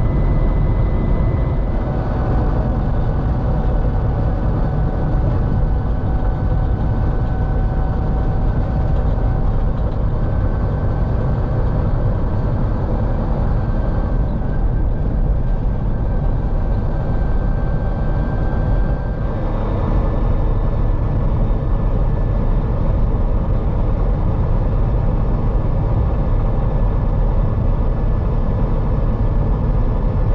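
Steady engine drone and road noise heard inside the cab of a Peterbilt 389 tractor-trailer at highway speed. A thin high whine sits over it through the first two-thirds, and the sound shifts at about that point.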